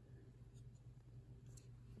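Near silence: a low steady hum of room tone, with a couple of faint clicks.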